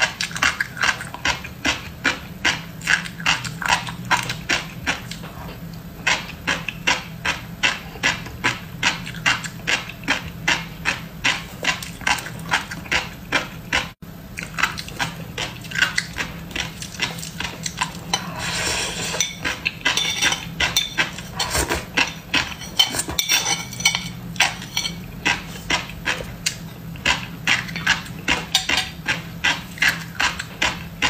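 Close-miked chewing of fish roe, a steady run of crisp pops about two a second. A metal spoon scrapes against a ceramic plate a little past the middle.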